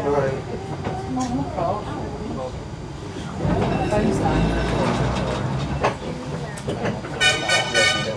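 Blackpool's Western Train illuminated tram running, heard from inside the carriage, with indistinct passenger chatter over it. Near the end a high tone pulses rapidly for under a second.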